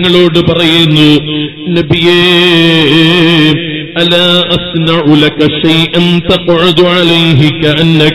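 A man's voice chanting in a melodic, sing-song line with long held, wavering notes.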